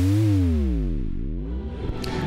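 Electronic intro sting on a synthesizer. A deep, buzzy synth tone glides up in pitch, falls over about a second, then starts rising again.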